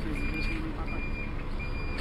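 A vehicle's reversing alarm beeping: a steady high-pitched beep repeating evenly, about three beeps in two seconds, over a low traffic rumble.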